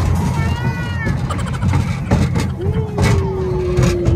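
Wind buffeting the microphone on a moving fairground ride, a heavy uneven rumble throughout. A short high-pitched vocal squeak comes about half a second in, and a steady held tone starts about two and a half seconds in and runs to the end.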